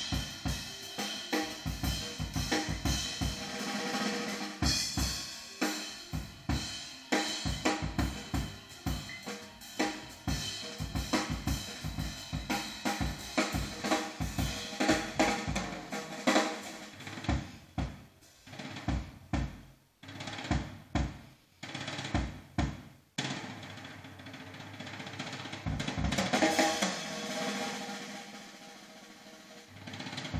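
Jazz recording played back through vintage JBL 4311 three-way monitor loudspeakers with 12-inch woofers, a busy drum-kit passage to the fore: rapid snare, bass drum and cymbal strokes. The strokes thin out to sparse hits about two-thirds of the way through, then a held sound swells near the end.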